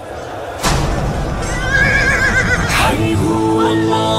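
A horse whinnies, one wavering high call, following a sudden loud hit; about three seconds in, music with held notes begins.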